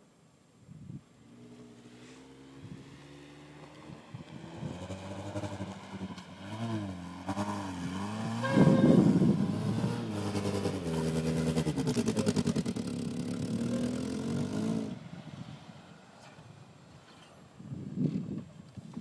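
Honda CR-V engine revving up and down as the SUV drives through loose sand, labouring for grip. It grows louder as it comes nearer, is loudest about halfway through, and fades away over the last few seconds.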